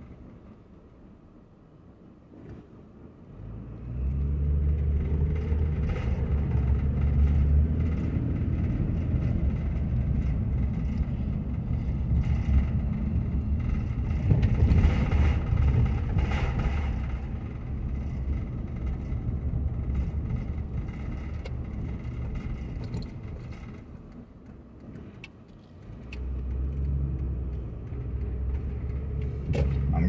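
Engine and road noise heard inside a moving car. It is quiet for the first few seconds, then a low rumble rises about four seconds in as the car pulls away from a stop. The rumble eases off a few seconds before the end and picks up again.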